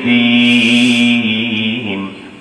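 A man singing a Bengali Islamic gazal, holding one long note that drops slightly in pitch a little past halfway and fades out near the end.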